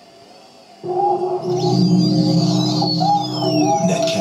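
Electronic intro music from a computer's built-in speakers: sustained synth tones with high sweeping, gliding sounds. It starts about a second in, after a brief hush.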